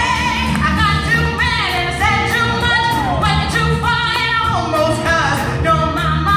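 A woman singing a gospel song live into a microphone, her notes bending and wavering with vibrato, over a backing of bass guitar, keyboard and drums.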